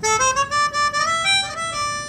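Melodica playing a short blues fill: a run of quick stepped notes that settles onto one held note near the end.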